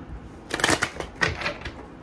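A deck of tarot cards being shuffled by hand: quick bursts of rapid crackling card clicks. The loudest comes about half a second in, and two shorter ones follow.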